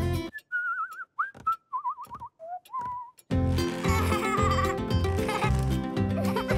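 The music drops out and a short warbling whistle plays, trilling and sliding up and down, with a few soft clicks. About three seconds in, bouncy cartoon music with a steady beat starts again.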